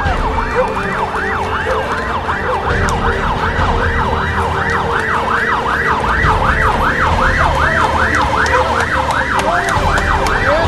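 Emergency vehicle siren in a fast yelp, its pitch sweeping up and down about three times a second, over a low rumble.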